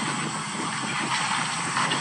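A steady rushing hiss with no clear pitch, holding at an even level.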